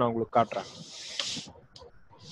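A spoken 'okay', then a steady hiss lasting about a second that cuts off suddenly, followed by a few faint ticks.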